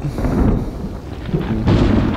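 Low, rumbling growl and breathing of a large dinosaur on a film soundtrack: the horned Ceratosaurus passing close to people who keep still.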